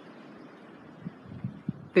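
Faint steady outdoor background hiss, with a few soft low thumps in the second half.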